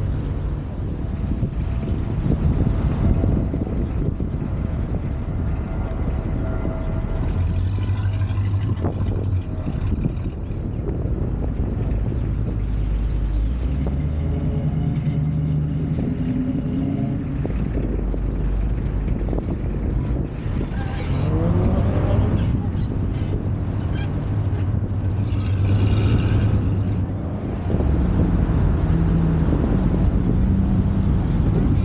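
Car engines running as show cars drive off one after another, each a low engine note that comes and goes. About two-thirds of the way through, one engine revs up with a rising pitch.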